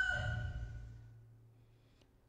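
The drawn-out end of a rooster's crow, its pitch sliding slightly down as it trails off and fades within about the first second. A low hum underneath dies away with it.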